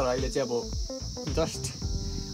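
A steady high insect chorus, with background music and a singing voice over it.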